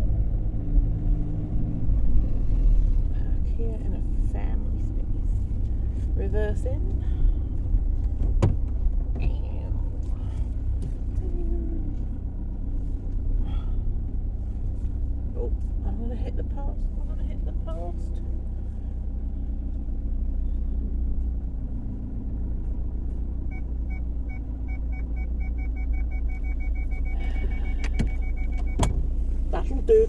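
Car cabin noise from inside a moving car: a steady low rumble of engine and road. Near the end a run of short, evenly spaced high beeps or ticks sounds for a few seconds.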